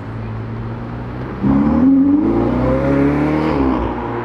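Ferrari 488's twin-turbo V8 running low, then accelerating hard from about a second and a half in, its pitch climbing for two seconds and falling away near the end.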